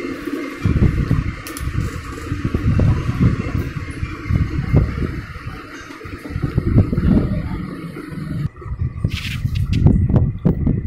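Uneven low rumbling background noise, with a few sharp clicks near the end.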